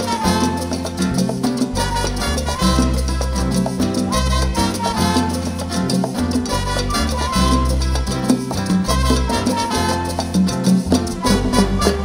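Live salsa band playing an instrumental passage, with no singing: a steady, stepping bass line under congas, timbales, plucked strings and keyboard.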